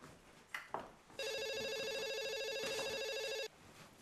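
Telephone ringing: one trilling electronic ring lasting about two seconds, starting just after a second in, with a couple of faint clicks before it.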